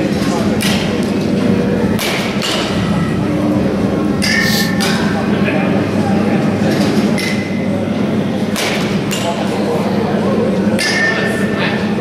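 Baseball bat striking pitched balls in an indoor batting cage: sharp knocks every couple of seconds, some in quick pairs, over a steady low hum.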